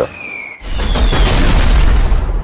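Bomb explosion sound effect: a short falling whistle, then about half a second in a loud blast with a deep rumble.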